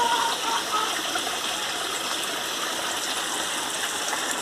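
Steady rush of running water from a backyard aquaponics system's circulating water flow.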